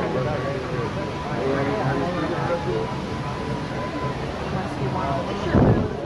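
Voices of people talking in a queue, with no clear words, over a faint steady tone. Near the end a brief low rumble on the microphone is the loudest sound.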